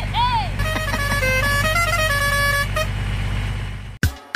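Low, steady engine-like rumble with even ticks, overlaid at the start by a short rising-and-falling tone and then by a horn-like melody of held, stepped notes lasting about two seconds.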